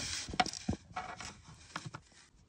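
Small plastic and metal parts of an N-scale trolley chassis being handled and pressed together by hand: rubbing, then a few light clicks.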